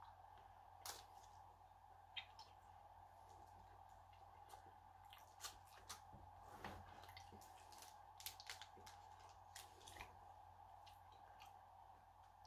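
Near silence over a faint steady room hum, broken by scattered faint wet clicks and smacks of a mouth chewing a bite of chocolate bar.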